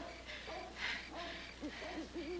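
Night ambience: an owl hooting in repeated low wavering notes that start about halfway through, over evenly spaced cricket chirps, with two short breaths in the first second.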